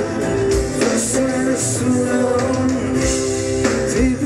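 Live pop-rock band playing through the PA, heard from within the crowd: guitars and keyboards over a steady drum beat with regular cymbal strikes.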